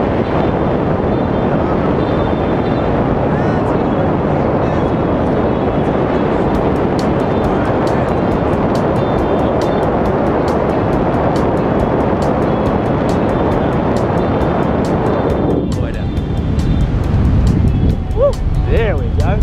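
Loud, steady rush of freefall wind on the camera's microphone during a tandem skydive, with a music track and its beat playing over it. About fifteen and a half seconds in the rush drops away as the parachute opens.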